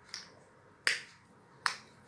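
Three sharp, short clicks, the middle one loudest, as a toddler's fingers work at a small snack in her hands.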